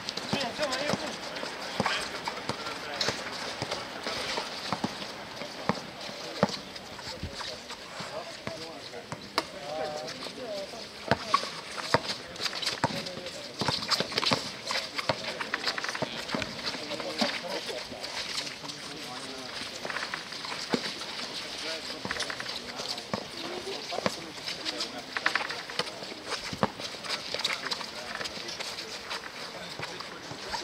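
Sounds of a streetball game: a basketball bouncing at irregular intervals on the court and players' shoes, with players and onlookers talking and calling out throughout.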